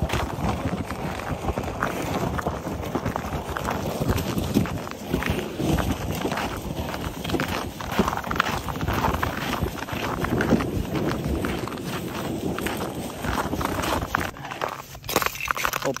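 Footsteps crunching on snow-dusted lake ice, with a loaded sled scraping along behind as it is hauled by a rope.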